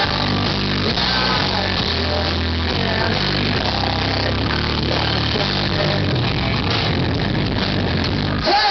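A rock band playing live on electric guitar, bass and drums in a passage without vocals, with the low bass notes changing about every second.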